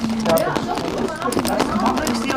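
Wooden lace bobbins clicking against one another in quick, irregular taps as pairs are crossed and twisted in bobbin lacemaking.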